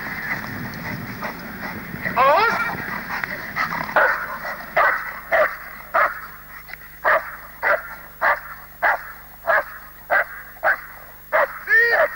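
A dog barking over and over in a steady rhythm, a little under two barks a second. The barking starts about four seconds in, after a drawn-out whining yelp about two seconds in.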